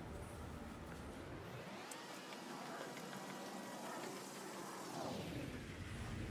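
Quiet background noise: a faint, even hiss with no distinct sound in it.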